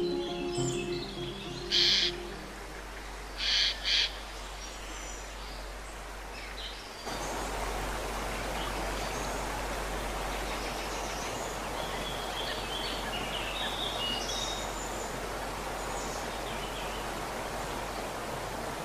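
Grand piano notes dying away. Then three short, loud bird calls, about two, three and a half and four seconds in. From about seven seconds in, the steady rush of a small woodland stream, with small birds chirping over it.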